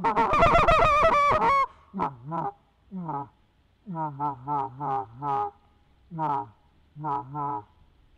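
Tim Grounds short reed goose call blown in a fast run of loud, high clucks for about the first second and a half. Then it cuts off abruptly into a soft, low laydown murmur of short notes in small groups. The sudden shutdown from excited calling to the murmur is the unnatural-sounding switch the demonstration warns against.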